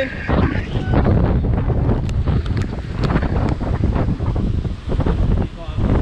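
Strong wind buffeting the microphone in uneven gusts over the rumble of heavy surf breaking on the rocks below.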